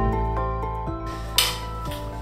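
Background music, a slow melody of single held notes. About halfway through, a bar spoon stirring ice in a stainless mixing tin comes in with a metallic rattle and a sharp clink.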